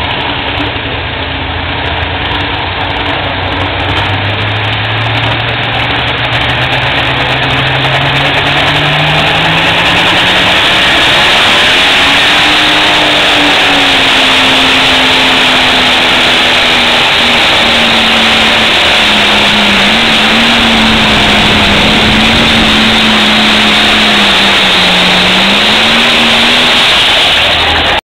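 International Harvester 966 pro stock pulling tractor's diesel engine revving up under full load as it pulls the sled. Its pitch climbs steadily over the first ten seconds, then holds high and loud with small wavers and a dip near the end.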